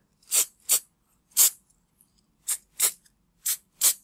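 Aerosol can of clear edible glaze sprayed in seven short hissing bursts, mostly in quick pairs.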